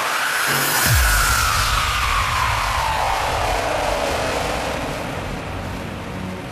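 Hardstyle electronic dance track in a breakdown: the kick drum beat has stopped, a deep bass note drops in pitch about a second in and then holds, and a long synth sweep slides slowly downward over a wash of noise.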